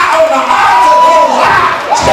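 A Black Baptist preacher's loud, chanted preaching with long held, sung pitches (the climactic "whoop"), with the congregation calling out responses.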